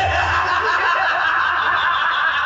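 A large audience's crowd noise: many voices chattering and laughing together, loud and continuous.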